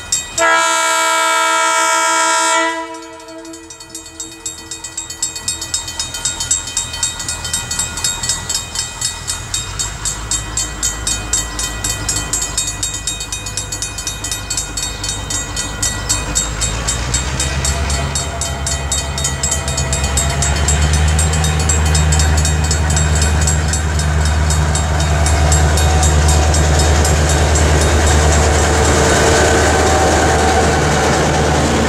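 Level crossing bells ringing, about two to three strikes a second, as a diesel locomotive sounds one long horn blast about half a second in. The locomotive's V8 diesel engine rumble then builds steadily, loudest over the last ten seconds as it draws close.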